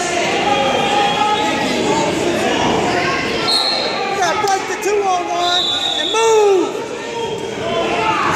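Many voices calling and shouting, echoing in a large gym hall, with a few short high squeaks among them.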